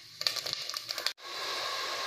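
Seeds crackling and spluttering in hot oil in the base of a pressure cooker, a rapid run of sharp pops during tempering. About a second in it cuts off abruptly, and a steady frying hiss follows.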